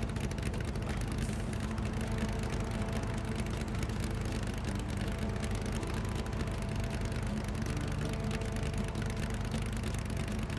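Car engine idling steadily, running again after a broken spark plug wire was repaired.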